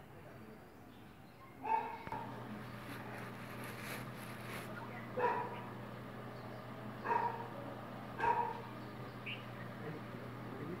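A dog barking: single barks a few seconds apart, four in all. A steady low hum sets in about two seconds in beneath them.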